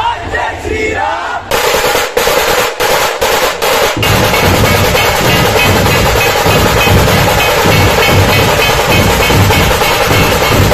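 A crowd shouting in unison, then a Puneri dhol-tasha ensemble strikes up about a second and a half in. A few loud separate strokes lead into steady massed dhol drumming with rapid tasha rolls.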